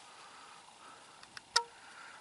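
Quiet outdoor background with two faint clicks and then one sharp click about a second and a half in.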